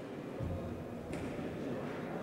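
Faint background noise of a boxing hall during a bout: a low even haze with a soft low thump about half a second in and a faint hiss starting about a second in.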